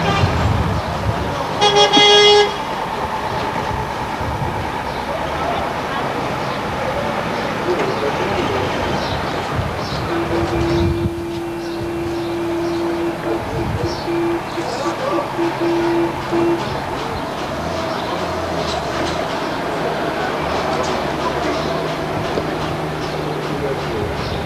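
A vehicle horn gives one short, loud toot about two seconds in, over a steady wash of street traffic noise. Later a lower steady tone holds for a few seconds, then breaks into a string of short beeps.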